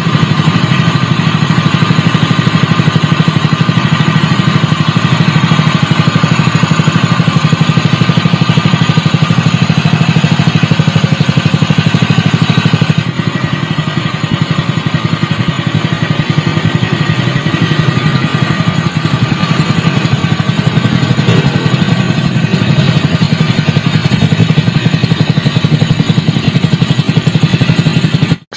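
A Honda GP200 196 cc single-cylinder four-stroke engine running steadily, then, from about halfway through, a Honda GX200 (made in China) running the same way. The two sound almost alike, the GX200 a little smoother.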